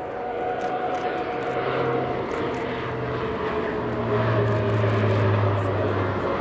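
Leonardo C-27J Spartan's two Rolls-Royce AE 2100 turboprops and six-blade propellers giving a steady propeller drone as the aircraft banks through a wingover with its gear down. The low hum grows stronger about four seconds in.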